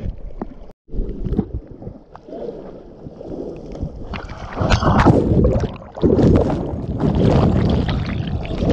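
Seawater sloshing and splashing around a camera held at the surface of the surf, with a brief dropout about a second in. About halfway through a shorebreak wave breaks over the camera and a loud, churning rush of turbulent water takes over.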